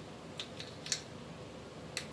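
A few light clicks and taps from small objects being handled on a tabletop: three in the first second and one near the end, over a faint steady hiss.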